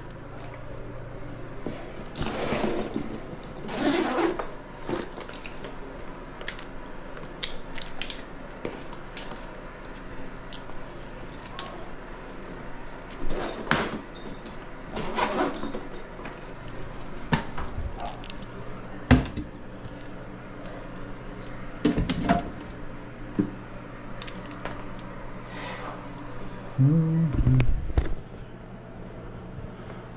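Scattered clicks, knocks and light metallic rattles of tools and the air handler's sheet-metal cabinet being handled as it is opened up, with a few heavier knocks past the middle, over a steady low hum.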